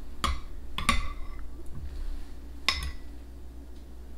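Metal spoons clinking against ceramic soup bowls as soup is stirred and scooped up: three sharp clinks, each with a short ring.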